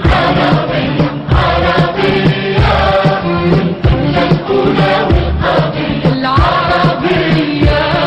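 Arabic song: a choir singing over an instrumental backing with repeated drum hits.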